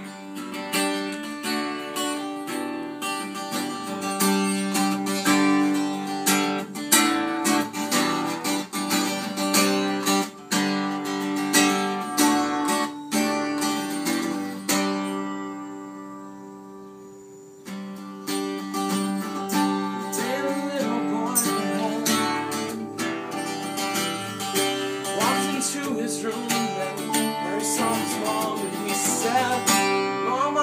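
Strummed acoustic guitar with an electronic keyboard playing chords along with it. About halfway through, a chord is left ringing and fading for a couple of seconds before the strumming starts again.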